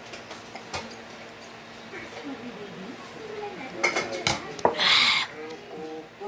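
Tableware clinking on a dining table: a few light knocks early and a cluster of sharper clicks about four seconds in, followed by a short breathy rush of noise just before five seconds.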